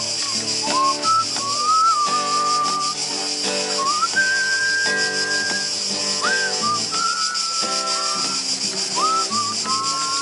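A man whistles a melody while strumming chords on an EKO acoustic guitar. The whistled tune holds long notes and slides up into several of them.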